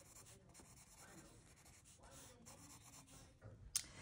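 Faint scratching of a colored pencil on paper as it shades over marker coloring, with a single sharp click near the end.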